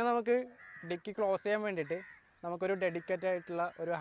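A man's voice speaking, with a few drawn-out syllables and short pauses.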